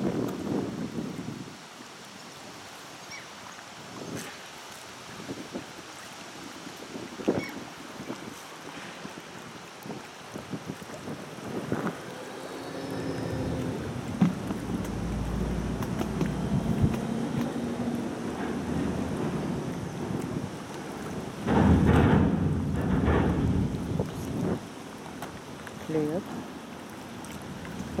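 Wind buffeting the microphone in the open air, with a heavy gust about three-quarters of the way through. A low engine hum swells in the middle and fades.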